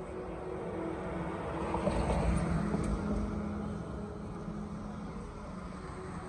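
A car passing by on the street, its noise swelling to a peak about two seconds in and then fading away.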